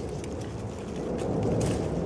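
Soft rustling of raspberry leaves and canes as a hand picks among them, over a low rumble of wind on the microphone.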